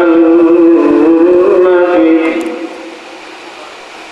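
A man chanting into a microphone, holding one long, steady note that fades out a little over two seconds in; the rest is much quieter, a pause for breath in the chant.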